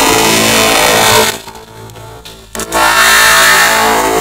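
A voice run through heavy 4ormulator-style distortion effects, loud and harsh, drawing out "Oreos". It drops away after about a second, and a second loud distorted stretch starts near three seconds in.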